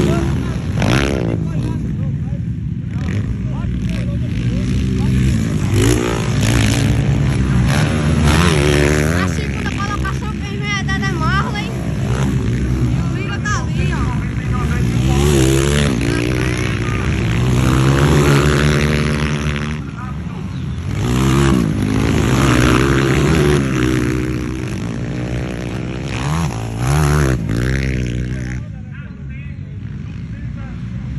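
Several 230cc motocross bikes racing on a dirt track, their engines revving up and down one after another as they pass and accelerate out of the turns. The sound dips briefly near the end.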